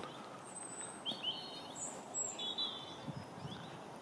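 Faint birdsong: a few short, high chirps scattered through the middle, over a quiet outdoor background hiss.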